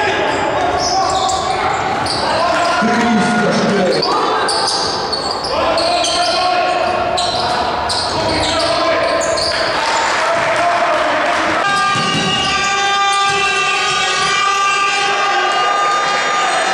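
Live basketball game sound in a gym: the ball bouncing on the court and players' voices echoing in the hall. Over the last few seconds a steady tone with several pitches is held.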